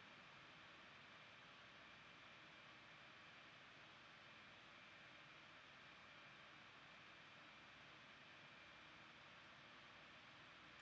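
Near silence: a steady faint hiss with a thin high tone in it.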